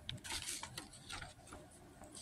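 A sheet of printer paper rustling as it is handled and lowered, in a few short irregular bursts with light rubs and clicks.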